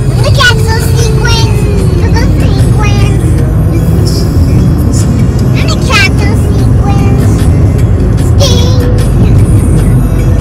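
Steady low rumble of road and engine noise inside a moving car's cabin, with voices and music over it.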